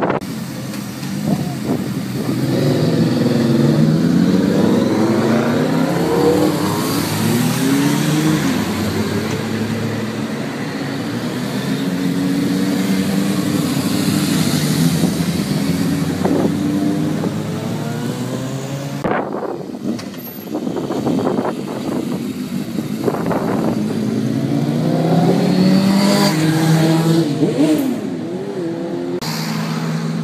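A stream of motorcycles riding past, several engines overlapping, each revving up through the gears so the engine notes keep rising and falling. The sound breaks off briefly about two-thirds of the way through, then picks up again with more bikes accelerating.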